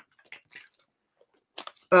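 A man drinking from a plastic water bottle: a few short, soft gulping sounds, then a quick run of clicks near the end.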